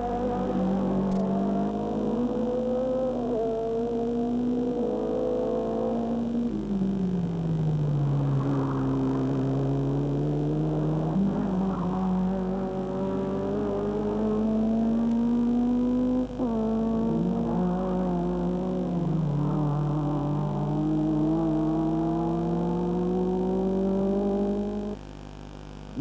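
Racing car engines at speed on a circuit: the engine note falls, then climbs steadily as the car accelerates, drops suddenly about sixteen seconds in like a gear change, and climbs again before cutting off near the end.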